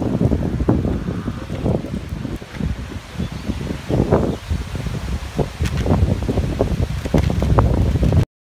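Strong, gusty wind buffeting the microphone: a steady low rumble with irregular louder gusts.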